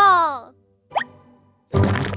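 Cartoon sound effects: a pitched tone sliding down and fading out within the first half second, then a single short, quickly rising plop about a second in. Music comes in again near the end.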